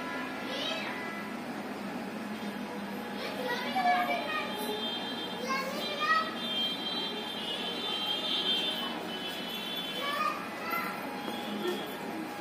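Children's voices in the background, calling and chattering in short bursts, with one longer high-pitched call held for a few seconds in the middle.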